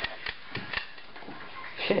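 A hand stapler being fired repeatedly: about four sharp clicks within the first second.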